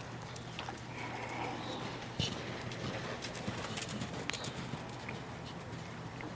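A horse's hooves cantering on sand arena footing, an uneven run of soft knocks. One sharper, louder knock comes about two seconds in.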